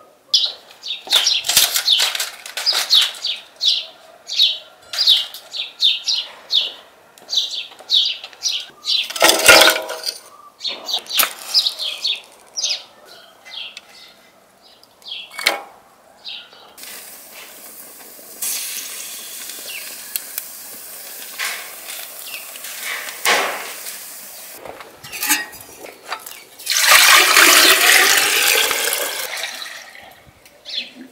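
A run of short, sharp clicks and snaps, then a steady hiss as a match lights dry kindling and the wood fire catches. Near the end, water poured from a metal jug into a samovar makes a loud, rushing pour, the loudest sound here.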